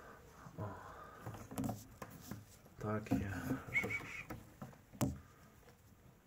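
Quiet, indistinct muttered speech in short snatches, with a brief high squeak a little before four seconds and a single sharp click about five seconds in.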